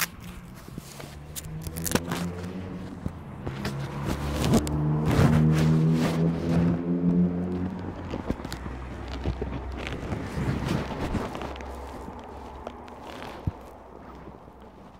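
Footsteps and knocks of a glass entrance door being pushed through, over a steady low motor hum that grows louder a few seconds in and fades after about eight seconds.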